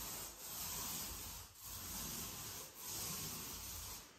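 Small paint roller rolling white paint onto a wall: a soft hissing rub in strokes of about a second, with brief breaks between strokes.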